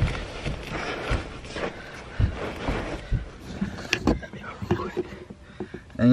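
A person clambering over the seats inside a small car: clothing rustling against the upholstery, with scattered knocks and thumps of limbs against the seats and interior trim, the strongest about four seconds in.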